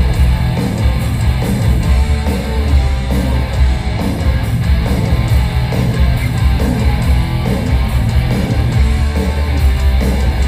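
Live heavy metal band playing loud and steady: electric guitars over bass and drums, heard from within the crowd.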